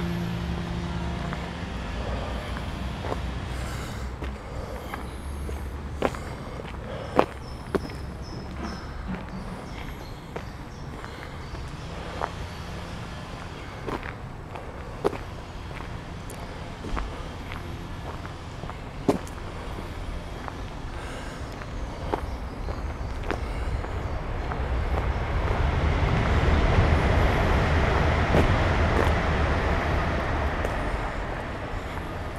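Footsteps on a gravel path over a steady low rumble, with scattered sharp clicks. Over the last few seconds a broad rushing noise builds and grows louder, as of a vehicle passing.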